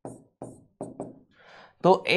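Pen tapping and knocking on the writing board in short, sharp strokes, about four in the first second, as the expression "f(g(x)) =" is written. A soft breath follows, and a man's voice begins a word right at the end.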